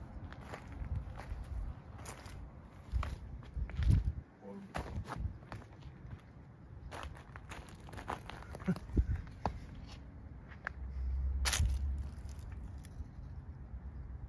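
Irregular crunching footsteps on wood-chip mulch and dry leaves, with the sharpest crunches about four seconds in and near the end, over a low rumble on the microphone.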